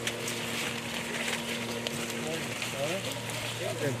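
Hazelnut branches and leaves rustling and crackling as pickers work through them by hand, over a steady low hum; women's voices talk from about two seconds in.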